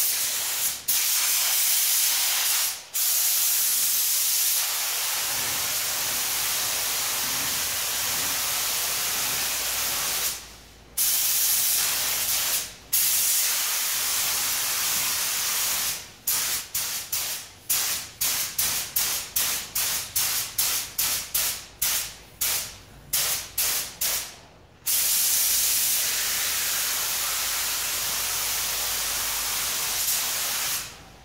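Compressed-air paint spray gun hissing as silver metallic base coat is blended onto panels. Long passes with the trigger held are broken by a few short pauses. Around the middle comes a run of short trigger pulls, about two a second, then long passes again near the end.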